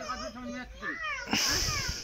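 A small child's high-pitched voice making short, whiny vocal sounds, with a brief burst of rushing noise near the end.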